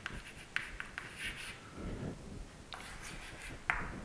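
Chalk writing on a chalkboard: faint scratching, with a few sharp taps as the chalk strikes the board.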